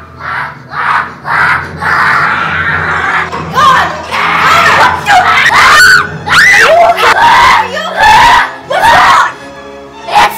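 Children screaming over background music, with a run of short, loud shrieks that rise and fall in pitch, starting about a third of the way in.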